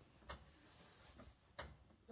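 Near silence: room tone with two faint, short clicks about a second and a quarter apart.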